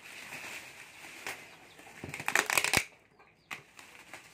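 Plastic bubble wrap rustling and crinkling as it is handled and pulled off a cardboard box, with a loud burst of crackling a little over two seconds in and a few single clicks.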